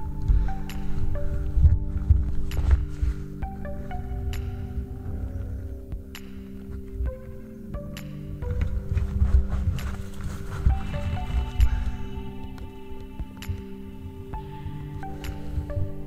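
Background music of slow, sustained notes with struck bell-like tones, over irregular low thumps and rumble from the handheld camera moving through snow.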